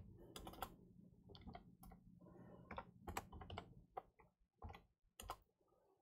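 Faint, irregular tapping of computer keyboard keys, over a low steady hum that fades out about two-thirds of the way through.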